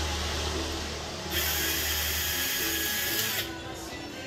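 Cordless electric screwdriver running on fasteners at a motorcycle cylinder head: its motor starts right away, speeds up to a higher whine about a second in, and stops shortly before the end. Background music continues underneath.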